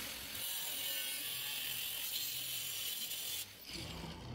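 Steel angle iron being cut with a power tool: a steady, high-pitched cutting hiss that starts abruptly and stops about three and a half seconds in.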